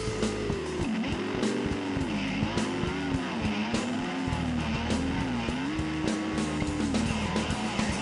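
Live blues-rock band playing: an electric guitar holds long notes that swoop up and down in pitch, over drums and bass.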